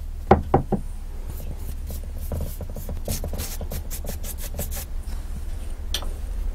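Three quick knocks about half a second in, the loudest sounds, then a quick run of short paintbrush strokes dabbing acrylic paint onto a painted lamp base, several a second. A steady low hum runs underneath.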